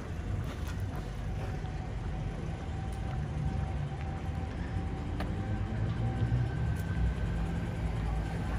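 Low, steady engine and tyre rumble of cars driving slowly up a city street toward the listener, a Toyota RAV4 among them, with a faint steady whine from about two seconds in.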